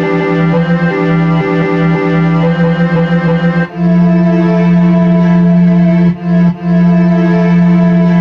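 Held synthesizer notes from a software instrument played on an Alesis V49 MIDI keyboard controller. The notes shift in pitch over the first few seconds, a new chord is held from about halfway, and it breaks off twice briefly near the end.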